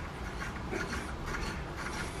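Steel wire saw drawn back and forth through PVC pipe by hand, a steady rubbing friction noise; the wire is hot and melting its way through the plastic, which makes it harder to pull.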